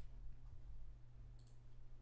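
Two faint computer mouse clicks about a second and a half apart, over a low steady hum.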